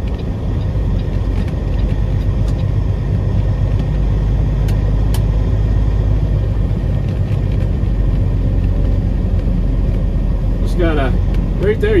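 Peterbilt 389 semi truck's diesel engine running as it creeps along at low speed, a steady low drone heard from inside the cab. A couple of faint ticks come about five seconds in.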